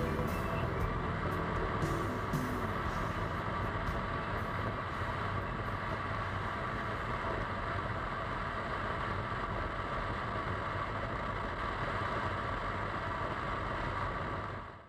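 A motorcycle riding at speed, heard through a bike-mounted action camera: a steady rush of wind and road noise with the engine running underneath. Music fades out in the first couple of seconds.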